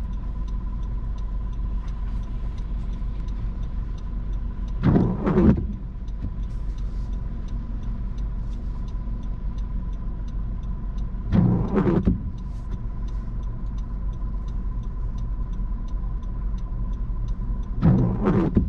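Windshield wipers sweeping across a rain-wet windshield, each pass a short swish that comes about every six and a half seconds. Under it is the low steady rumble of the stopped car heard from inside the cabin.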